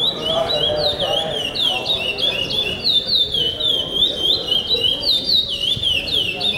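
A caged pardo songbird singing its 'pico-pico' song with repetition: a continuous, fast string of high, swooping whistled notes, each dipping and rising, repeated without a break.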